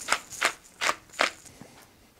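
Hand-twisted spice mill grinding seasoning into a bowl: four short grinding crunches in quick succession, then it stops.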